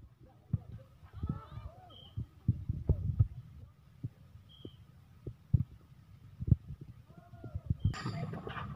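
A volleyball being struck again and again during a rally, a series of sharp thumps, with players' shouts in between.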